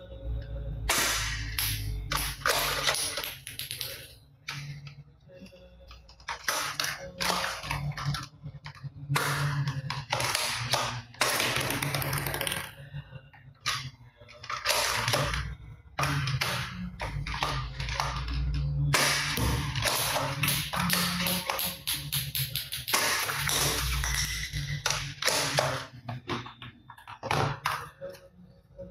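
Hard plastic toy guns clattering, knocking and clicking as they are picked up and handled, in many irregular bursts, over background music.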